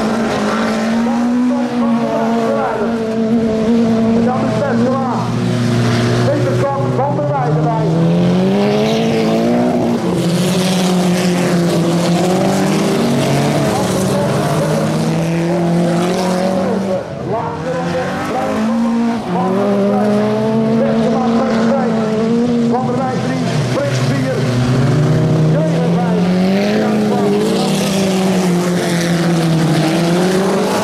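Several autocross cars racing together on a dirt track. Their engines rev up and down repeatedly as they power through the corners, several engine notes overlapping.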